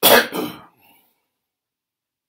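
A man coughs twice in quick succession, clearing his throat, in the first second.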